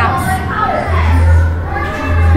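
Indistinct speech and children's voices over a steady low hum.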